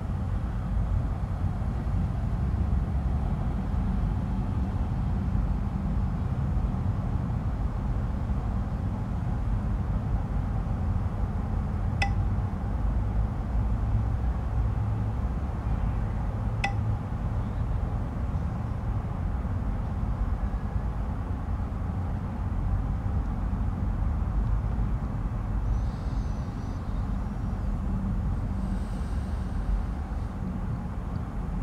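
Outdoor ambience in a meadow: a steady low rumble, with two short clinks about five seconds apart near the middle.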